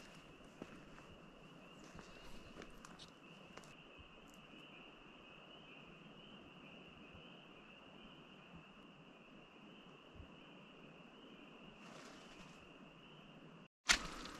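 A faint, steady, high-pitched chorus of distant calling animals, with soft footsteps on leaf litter in the first few seconds and again near the end.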